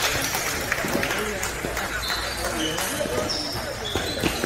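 Indistinct background chatter from people in a table tennis hall, with a few light ping-pong ball bounces.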